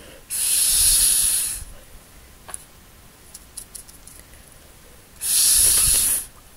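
Two long puffs of breath blown through a plastic drinking straw, each a steady hiss of air lasting about a second, one near the start and one near the end. They blow wet watercolor drops into streaks across the paper.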